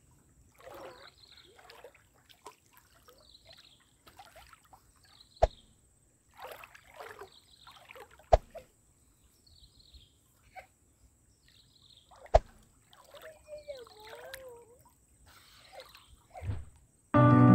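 Light splashing and sloshing of lake water in short irregular spells, broken by three sharp clicks a few seconds apart and a brief warbling tone near the end.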